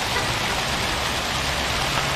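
Steady splashing rush of water from outdoor fountain jets falling into a basin.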